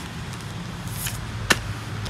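Steady low background hum and hiss, with a brief rustle about a second in and a single sharp click about a second and a half in.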